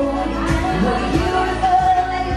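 Live pop music: a woman singing into a microphone over an amplified electric guitar, with a steady beat.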